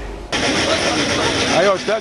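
Outdoor street ambience of traffic and engine noise mixed with people's voices. It starts abruptly about a third of a second in, after a brief studio quiet.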